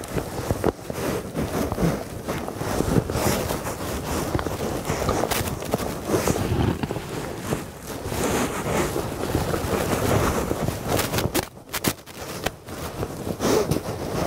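Wind buffeting the microphone, uneven and gusty, with a few brief clicks late on.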